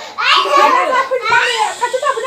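Children talking in high-pitched voices.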